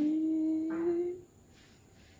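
A person humming a long, drawn-out "mmm" whose pitch rises slowly; it stops a little after a second in.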